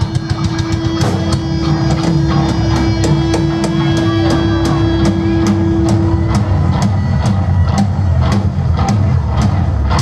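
Rock band playing live: a drum kit keeps a steady beat of cymbal and snare hits over distorted guitar and bass. A single held note rings above the band and stops about six seconds in.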